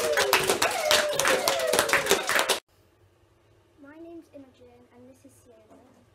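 A small group clapping hands in a classroom, with a child's voice whooping over the applause; the clapping cuts off abruptly about two and a half seconds in. Faint voices follow.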